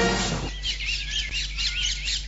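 Birds chirping in a quick run of repeated warbling notes, about four or five a second, starting as the music cuts off about half a second in.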